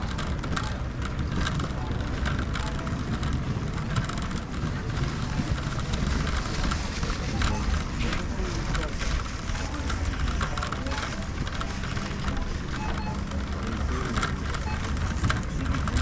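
Shopping trolley being pushed through a supermarket, a steady low rolling rumble from its wheels with constant small rattles and clicks, and faint voices in the background.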